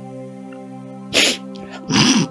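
Background music holding one steady chord, with a short, sharp breath about a second in and another at the very end.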